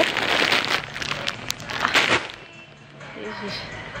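Plastic bag of pepernoten crinkling as it is handled close to the microphone, a dense crackling rustle for about two seconds that then stops.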